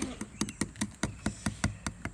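A quick run of light plastic taps and clicks, about five a second, as a plastic squeeze bottle of slime mix is worked and emptied into a plastic cup.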